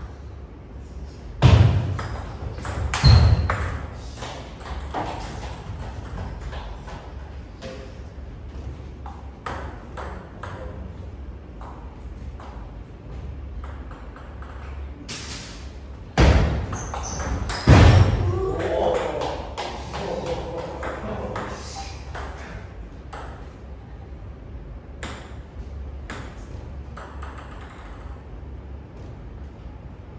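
Table tennis rallies: the ball clicking off the rackets and the table in quick runs of short, sharp hits. Several much louder knocks come in pairs, about a second and a half in and again about sixteen seconds in, and voices are heard just after the second pair.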